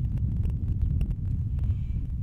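A steady low rumble with no speech, and a faint click about a second in.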